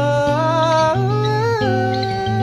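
A male voice humming a wordless melody in long held notes that step up in pitch about a second in, over acoustic guitar accompaniment.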